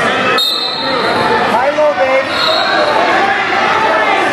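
Overlapping voices of spectators and coaches talking and calling out, echoing in a gymnasium.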